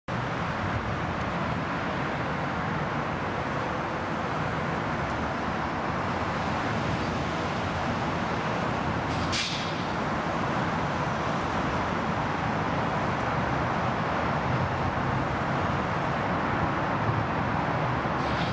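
Steady rumble of road traffic on the elevated highway, with a brief hiss about nine seconds in.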